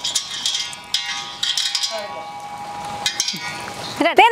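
A live freshwater eel being handled into a steel pot: a few short scrapes and clatters against the metal.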